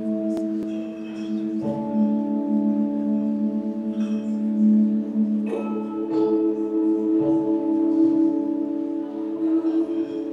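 Synthesized bell-like tones held and layered into a chord, the notes generated from polygon geometry. New notes enter and the chord changes about two seconds in, again around five and a half seconds, and once more around seven seconds.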